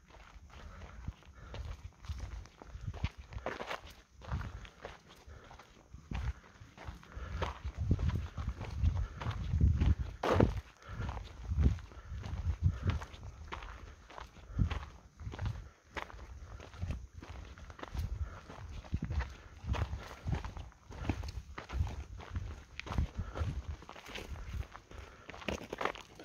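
Footsteps on a stony, gravelly dirt track, at a steady walking pace.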